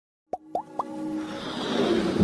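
Animated logo intro sound effects: three quick plops, each gliding upward in pitch and each higher than the last, starting about a third of a second in, followed by a whooshing swell that builds steadily.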